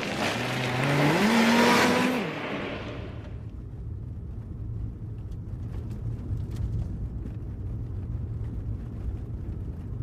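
Car engine revving hard and accelerating, its pitch climbing in two steps, then fading away after about two seconds, leaving a low, steady rumble.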